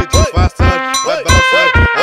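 Brazilian funk beat without vocals: a synth melody whose notes swoop up and back down about three times a second, over regular drum hits.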